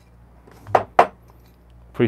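A thin-walled Kinto glass coffee server clinks twice in quick succession, about a second in, as it is knocked while being handled.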